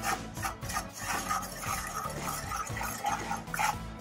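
A spatula scraping and stirring around a wok of melting butter and sugar, in a few separate strokes.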